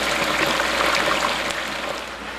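Chicken wings frying in 375-degree peanut oil in an Emeril electric deep fryer, just dropped in: the oil bubbles and crackles hard, easing a little near the end.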